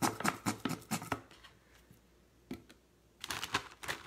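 Barbecue sauce being emptied from its bottle into a plastic freezer bag: a quick run of sharp clicks and crackles from the bottle and bag, a pause, then more clicks near the end.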